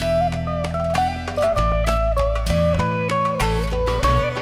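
Live band music with no singing: an electric guitar plays a sliding lead melody over a steady bass line and hand-drum strokes.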